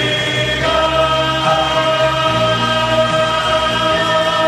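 Male vocal group singing a gospel song in close harmony, holding long sustained chords, with a new chord coming in just under a second in.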